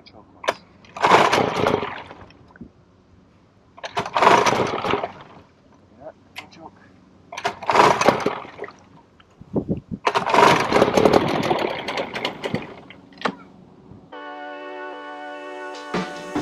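A 1949 Kiekhaefer Mercury KE7H two-stroke racing outboard being rope pull-started four times, each pull spinning it over briefly without the engine catching. It won't start, which the owner puts down to not spinning it fast enough while the propeller has to turn in the water. Music comes in near the end.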